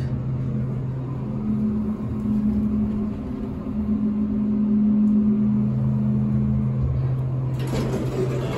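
Traction elevator cab travelling: a steady hum with a low rumble, joined about a second in by a second, higher hum that drops away near the end as the car comes to a stop. Just before the end the sound brightens as the doors open.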